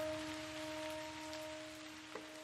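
Held keyboard notes ringing out after being struck and fading away slowly, a few steady tones over a faint hiss.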